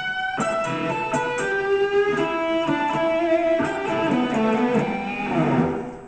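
Gold-top Les Paul-style electric guitar playing a blues lead phrase of single picked notes, quick at first, with a few notes held and left ringing in the middle, fading out near the end.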